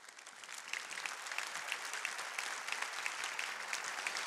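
Church congregation applauding, the clapping building up over the first second and then holding steady.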